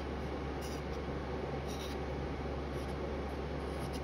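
Steel palette knife scraping and smearing aluminium-flake pigment into binder on a mulling surface, a continuous gritty rub with two sharper scrapes in the first two seconds. A steady low hum runs underneath.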